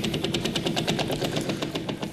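Game-show prize wheel spinning, its pegs clicking rapidly against the pointer's flapper. The clicks spread out near the end as the wheel slows.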